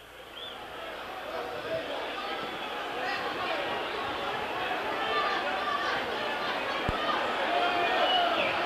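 Football stadium crowd, a din of many voices and shouts that swells over the first few seconds and then holds, as the home fans react to a foul on one of their forwards.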